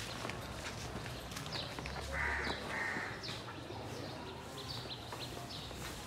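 Birds chirping with quick, short falling notes repeated throughout, and two louder calls a little over two seconds in.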